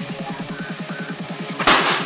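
Electronic background music with a fast, even pulse, then near the end a single loud, sharp bang as a pellet from a toy pellet rifle bursts a balloon.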